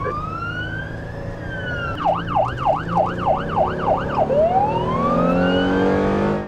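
Police car siren sounding: a slow wail falling in pitch, switching about two seconds in to a fast yelp of about three and a half sweeps a second, then back to a slow rising wail about four seconds in.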